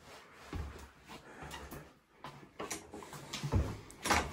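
Irregular soft thuds and light knocks in a small, bare room: footsteps on an old wooden floor and the handling of a wooden door, with the loudest thud near the end.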